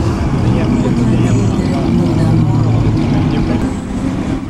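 Engines of vintage cars running at low speed as they move slowly past, a steady low drone, with people talking in the background.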